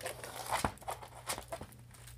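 Diamond-painting canvas with a glossy plastic cover sheet rustling and crackling under the hands as it is unrolled and pressed flat, in a few irregular soft crackles.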